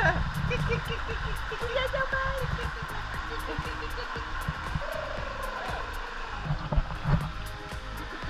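Background music with a light, steady beat, over a low rumble of pool water splashing around a baby's kicking legs, with a short laugh about a second in.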